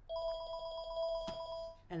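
An electronic telephone ringer sounding one trilling ring, about a second and a half long, that stops abruptly.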